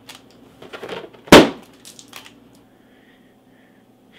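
A rubber balloon pricked and bursting with a single loud bang about a second in. A few faint clicks come before and after it.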